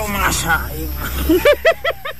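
A woman's voice speaking, then a quick run of short, very high-pitched repeated syllables, about five a second, near the end, like a shrill cackle.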